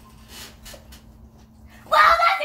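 A few faint rustles against room quiet, then just before the end a girl's loud, high-pitched vocal exclamation begins.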